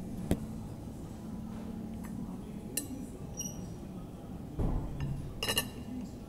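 Metal knife and fork clinking and scraping against a china plate while cutting breakfast food: a sharp click just after the start, a few ringing clinks around three seconds in, a dull knock, and a cluster of ringing clinks near the end.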